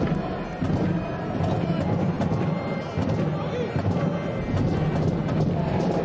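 Stadium crowd of soccer supporters singing and chanting steadily, a dense wash of many voices.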